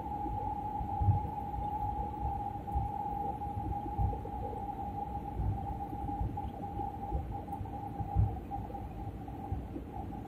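Airliner cabin noise during the descent to landing: a steady low rumble of engines and airflow with a constant mid-pitched whine, and a few low thumps.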